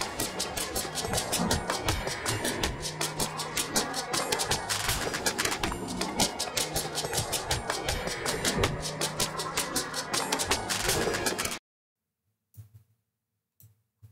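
The noise component separated by SpectraLayers 11's Unmix Components from an Afro R&B instrumental: a hissy, rhythmic wash of the track's percussion and noise textures, with a faint leftover of the bass. It cuts off suddenly near the end.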